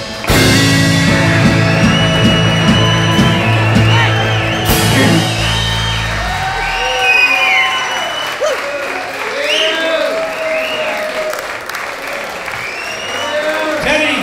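Live rock and roll band finishing a song, the last chord ringing out about halfway through, followed by the audience applauding and cheering with shouts.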